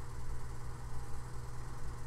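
A steady low hum with a faint hiss and some fluctuating rumble beneath it: the recording's background noise during a gap in the talk.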